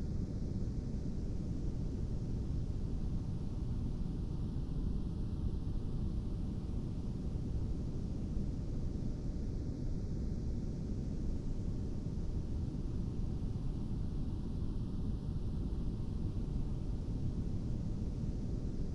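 Monroe Institute Hemi-Sync binaural-beat audio: a steady low rush of filtered noise with faint steady tones held beneath it. The higher hiss swells and fades about every five seconds.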